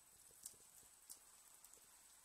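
Near silence: quiet background with two faint short clicks, about half a second and a second in.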